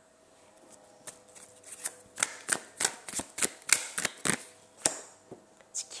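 Tarot cards shuffled by hand: a quick run of sharp card snaps and slaps, about a dozen, starting about a second in and thinning out near the end.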